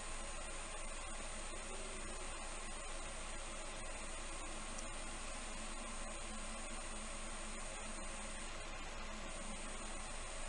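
Steady background hiss with a faint thin high whine running through it, and no distinct events.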